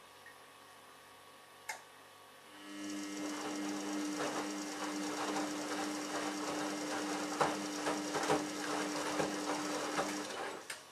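Samsung Ecobubble WF1804WPU washing machine tumbling its load in the main wash. A single click comes first, then about two and a half seconds in the drum motor starts with a steady hum, and water and wet laundry slosh and thump in the turning drum until it stops just after the end.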